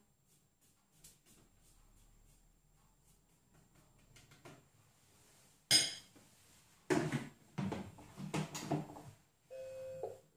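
Kitchen-utensil handling on a SilverCrest Monsieur Cuisine Connect food processor: a sharp metallic clink a little past halfway, then several knocks and clatters as the plastic lid is set on and locked onto the stainless steel bowl. A short electronic beep from the machine's touchscreen near the end.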